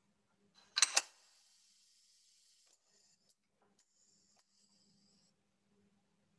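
Pneumatic pick-and-place station (Super Mechatronics Trainer SMT-58310) working: two sharp clacks close together about a second in as its air cylinders stroke, each set followed by a hiss of compressed air venting from the valves. The first hiss lasts about two seconds and a second, fainter one comes a few seconds later.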